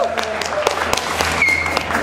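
Audience applause, scattered hand claps greeting a band member who has just been introduced on stage.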